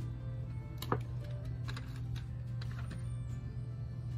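Background music with steady sustained tones, with a few short clicks over it, the sharpest about a second in.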